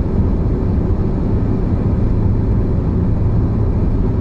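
Audi A6 2.8 V6 heard from inside the cabin while cruising: a steady low drone of engine and road noise.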